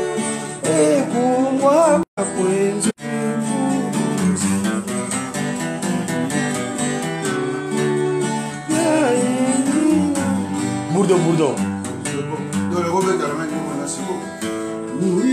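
Steel-string acoustic guitar being played, with a voice singing over it at times. The sound cuts out briefly twice, about two and three seconds in.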